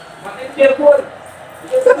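A man's voice making short calls: one brief utterance about half a second to a second in and another just before the end, with a quieter pause between.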